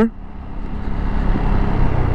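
Zontes 350E scooter under way: its single-cylinder engine running with wind and road noise on board, growing steadily louder.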